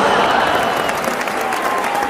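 Audience applauding: dense, even clapping from many people that eases off slightly toward the end.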